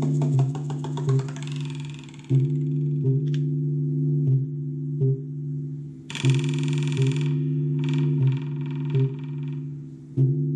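Live electronic music from an Elektron Digitakt and synthesizers: a held low chord with repeated accents, a fast ticking pattern that sweeps away in the first two seconds, and bursts of noisy hiss about six and eight seconds in.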